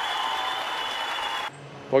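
Applause sound effect, steady, cutting off abruptly about one and a half seconds in.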